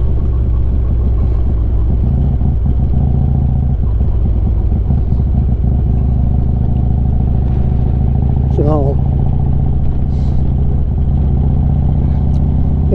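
Harley-Davidson Street Glide's V-twin engine running steadily at cruising speed, heard from the rider's seat with wind and road noise.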